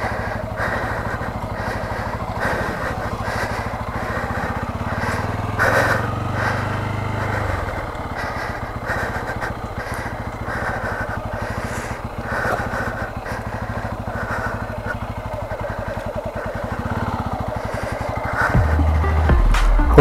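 Bajaj Pulsar N250's single-cylinder engine running while the bike is ridden, a steady low drone with close, even firing pulses. Its note shifts about seven and a half seconds in and again near the end.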